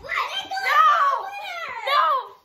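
A boy laughing and making excited, wordless vocal sounds, with other children's voices.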